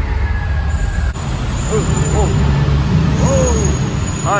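Soundtrack of an animatronic fire-and-smoke show, played loud: a deep rumble with voices calling over it. It breaks off abruptly about a second in, then goes on.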